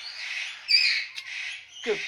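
Pet corella (white cockatoo) giving a harsh, hissing, raspy call with no clear pitch, swelling about two thirds of a second in and fading before a voice speaks.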